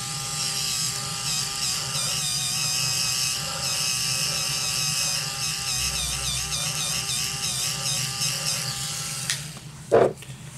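Small electric motor of a Duvolle Radiance Spin Care System whining steadily as its spinning brush head works around the eye, the pitch wavering in the middle. It switches off about nine seconds in.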